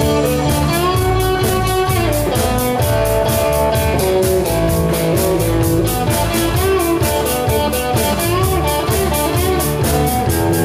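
Live blues-rock band playing an instrumental passage: electric guitar lines that bend in pitch over bass and a drum kit keeping an even cymbal beat.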